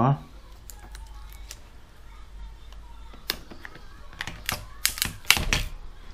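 Light clicks and taps of small plastic parts being handled as a tablet battery is lifted out of its case, several in quick succession in the second half.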